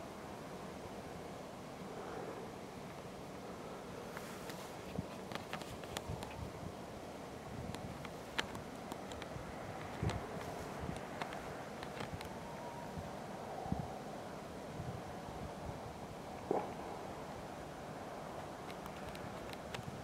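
Faint, steady outdoor background noise, like distant traffic or wind, with scattered small clicks, rustles and the odd light thump.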